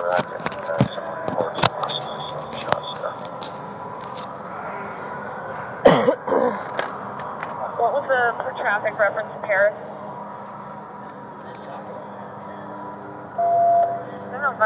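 Clicks and knocks of equipment handled against a body-worn camera, with one loud knock about six seconds in. Voices are heard in patches, over a faint steady high tone.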